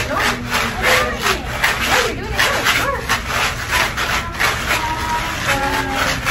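Homemade paper-plate shakers, beads rattling inside folded paper plates, shaken by several children in a quick rhythm of about three or four shakes a second.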